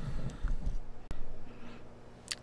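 Bench handling noise from adjusting test equipment: low bumps and a single sharp click about a second in, over a faint steady hum.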